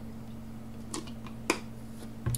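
A person drinking from a bottle: two short swallowing clicks, the second louder, about one and one and a half seconds in, over a steady low hum.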